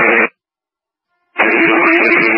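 Two-way fire radio heard through a scanner: a brief burst of static as one transmission cuts off, a second of dead silence, then about one and a half seconds in the next transmission keys up with a loud, hissy, noisy signal and a steady hum.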